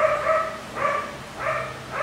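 A dog barking: three short barks a little over half a second apart.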